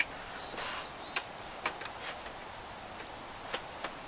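Scattered light clicks and knocks, about half a dozen, with a brief scrape about half a second in, as the rolled-up aluminum slat tabletop of a camp table is handled and strapped together.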